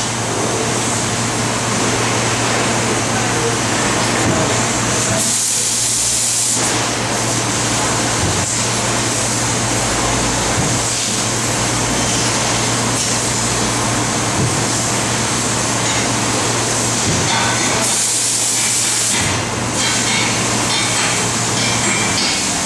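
TRUMPF laser cutting machine running while cutting sheet metal: a steady hum under a hiss of cutting gas. The hiss grows sharper and louder twice, around six seconds in and again around eighteen seconds in.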